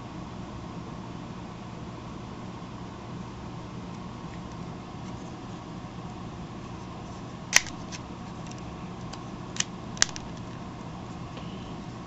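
Small plastic clicks from the hinged parts of a Galoob Action Fleet toy landing craft being handled: one sharp click past the middle, then two more close together about two seconds later, over a steady low hum.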